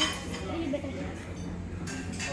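Restaurant dining-room background: a murmur of diners' voices with occasional faint clinks of dishes and cutlery over a low steady hum.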